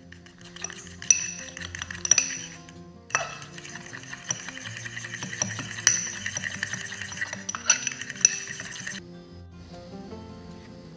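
Metal fork beating an egg yolk glaze in a ceramic bowl: rapid clinking and scraping of the tines against the bowl, pausing briefly about three seconds in and stopping about a second before the end.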